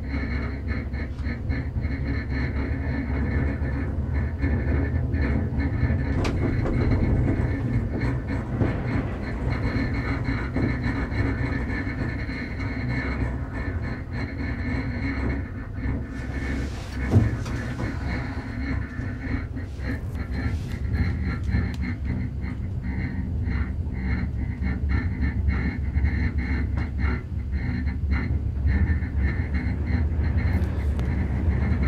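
Gondola cabin riding along the haul rope, heard from inside: a steady low rumble with small rattles and a faint steady high whine, and a single thump about halfway through.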